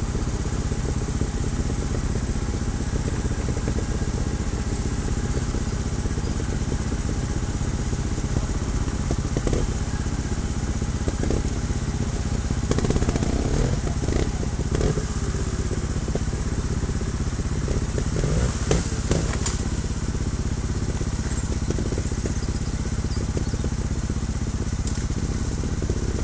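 Trials motorcycle engine idling steadily, with a few scattered knocks and clatters in the middle as the bike works over loose rocks.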